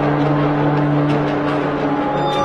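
Sound effect for an animated logo intro: a steady low electronic hum under a rushing noise, like a machine spinning up.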